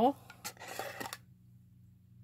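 Brief handling of a small glass jar candle: a few light clicks and a soft rasping rub, stopping a little over a second in. Then near silence over a low steady hum.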